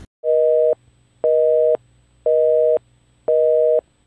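Telephone busy signal: four beeps, each a steady two-note tone lasting about half a second, with half-second gaps between them.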